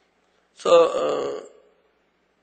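A man's voice through a pulpit microphone: one drawn-out vocal sound lasting about a second, starting about half a second in.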